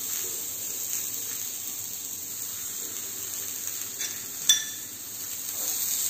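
Steady faint hiss with one sharp, ringing clink about four and a half seconds in, as a glass serving plate is set down on a stone counter.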